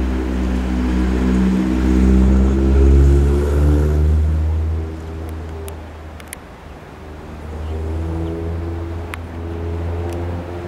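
A car engine pulling under load, heard from inside the car with a deep drone. Its pitch rises over the first four seconds, eases off about five seconds in, and climbs again near the end. A few sharp clicks come in the quieter middle part.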